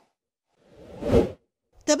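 A single whoosh sound effect for a news-bulletin transition between stories, swelling for about half a second and cutting off suddenly a little over a second in.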